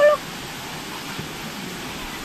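Swimming-pool water rushing and lapping close to the microphone in a steady even wash, after a voice calling out stops right at the start.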